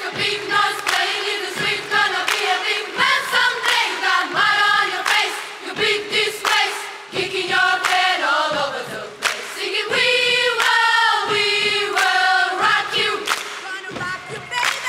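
Large girls' choir singing in many-part harmony, holding sustained chords. The singing is broken by short, sharp percussive hits.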